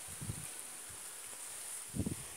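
Faint outdoor background with a steady high-pitched insect buzz, and a soft bump from the phone being handled about a quarter second in.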